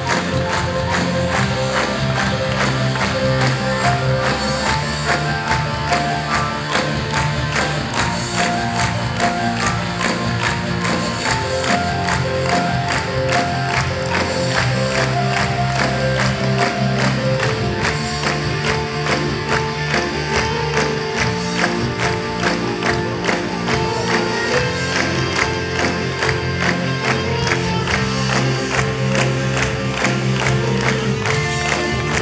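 Live band music with electric guitars and a steady beat, with rhythmic hand-clapping.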